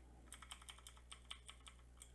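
Faint, quick taps on a computer keyboard, about a dozen in a row, as arrow keys are pressed to nudge an image layer into place, over a steady low electrical hum.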